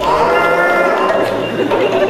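A drawn-out, moo-like pitched call with several overtones, its pitch sliding up and back down, made as part of a live improvised sound performance.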